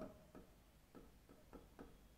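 Near silence with about five faint, irregular ticks: a pen tapping and stroking on the surface of an interactive writing screen as a word is written.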